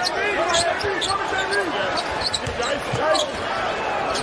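Basketball being dribbled on a hardwood arena court during live play, over a steady bed of arena crowd noise and voices.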